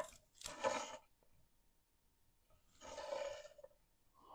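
A sharp click, then two faint breathy exhales about two seconds apart.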